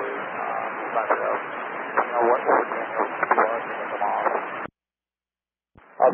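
Air traffic control radio transmission: a hissy, band-limited channel carrying a faint, garbled voice that cuts off abruptly about three-quarters of the way through. About a second of dead silence follows, then the next transmission keys up right at the end.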